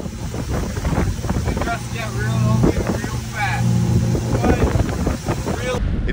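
Motorboat underway: a steady engine hum with wind buffeting the microphone, and a few brief fragments of voice.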